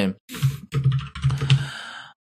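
Computer keyboard typing, three short runs of keystrokes close to the microphone.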